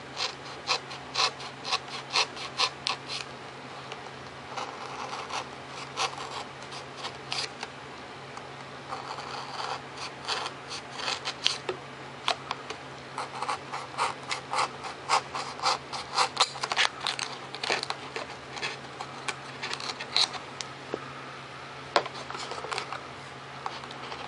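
Hobby knife cutting a servo slot into a foam tail boom: many short strokes in irregular runs, with brief pauses about three and eight seconds in.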